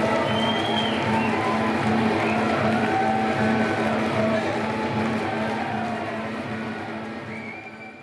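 Live music with a steady repeating pulse, still sounding from the stage amps and PA after the song, with a crowd's cheering and a whistle or two over it. It fades out near the end.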